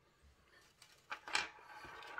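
Faint handling noises: a few small clicks and a brief rustle about a second in, as small parts are picked up and handled. The first second is near silence.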